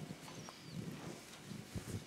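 Quiet church with faint rustles and a few soft, irregular knocks of movement at the altar, a slightly louder knock near the end.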